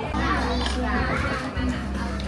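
High-pitched voices talking over background music.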